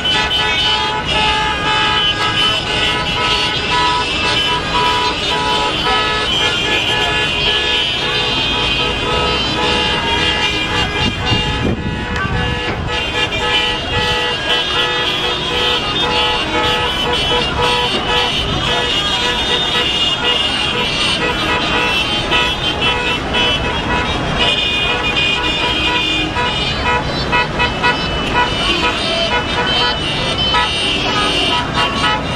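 Street traffic with many car horns sounding steadily and overlapping, over the voices of a crowd.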